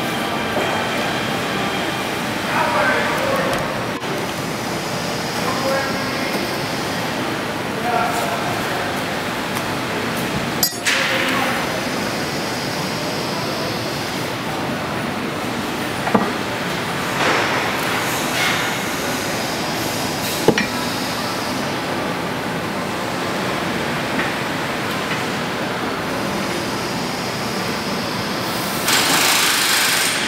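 Steady industrial shop background noise with faint, indistinct voices, broken by a few sharp metallic clinks of the steel tooling, about three over the stretch.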